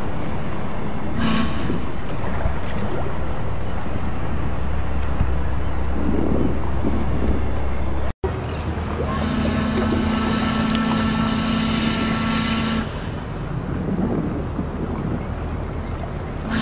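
Boat ambience: a steady low engine rumble with wind and water. A ship's horn gives a short toot about a second in and, after a brief break in the sound just past halfway, a long blast of about three and a half seconds.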